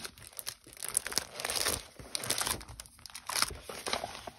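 Paper and plastic packaging crinkling and rustling in irregular bursts, with scattered sharp crackles, as sheets of stickers and paper are handled and pulled out.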